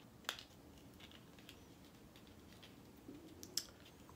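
Faint, scattered clicks and taps of fingernails picking at the small plastic packaging of a brow pencil while trying to open it: one click about a third of a second in, a few more around a second in, and a couple near the end.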